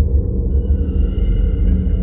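Metro train running: a loud, steady low rumble, with several steady high-pitched whining tones coming in about half a second in.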